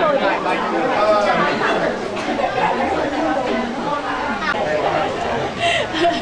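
Several people talking at once: overlapping conversational chatter in a room.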